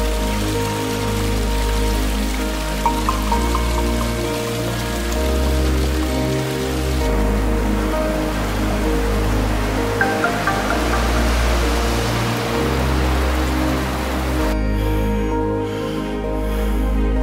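Soft background music over the steady splashing hiss of a thin waterfall spilling down a rock face; the water sound stops near the end, leaving only the music.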